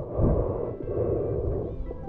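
Muffled rushing water noise around a camera held underwater, a steady haze with a low rumble.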